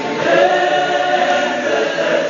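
Gospel choir singing a cappella, several voices in harmony holding long notes, with a new phrase starting just after the beginning.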